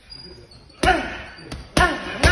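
Boxing gloves punching a hanging heavy bag: two hard blows about a second apart, with a lighter hit just before the second, each followed by a short ringing echo in the hall.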